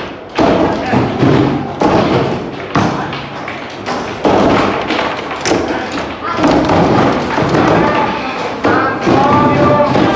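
Table football (foosball) in play: irregular sharp knocks and thuds, about one or two a second, of the ball being hit by the plastic figures and the rods and ball knocking against the table.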